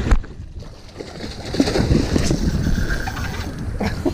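A sharp knock right at the start, then wind and handling noise on the microphone, rougher and louder from about a second and a half in.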